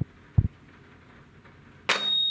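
Two deep heartbeat-like thuds at the start, a lub-dub pair about half a second apart, building suspense. Near the end a Bosch toy toaster pops its toast up with a sudden sharp clack.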